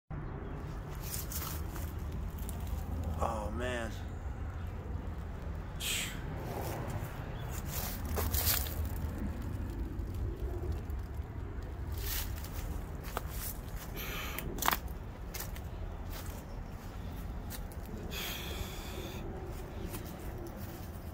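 Footsteps rustling and crunching through dry leaf litter over a steady low rumble, with a short voice-like sound about three seconds in.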